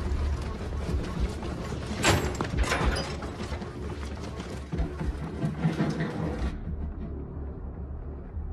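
Film sound effects: a steady low rumble with two sharp clattering impacts about two and three seconds in. The rumble thins out near the end.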